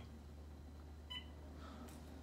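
A single short electronic beep from a mobile phone just over a second in, as a call is hung up, over a low steady hum.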